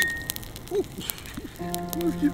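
Wood bonfire crackling, with scattered sharp pops and one loud pop right at the start, over background music.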